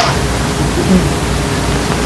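Steady hiss with no clear event in it, the background noise of the recording.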